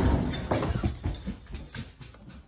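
A dog making sounds as it moves about, over a run of uneven knocks and scuffles that is loudest at the start and fades over about a second and a half.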